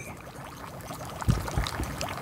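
Liquid sound effect: a steady pouring, trickling hiss, with a few soft low thuds about halfway through.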